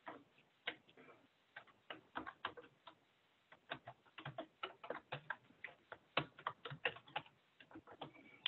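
Computer keyboard typing: a run of faint, irregular keystroke clicks.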